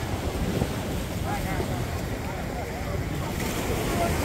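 Wind buffeting the microphone in a steady low rumble, with the indistinct voices of many people on the beach behind it.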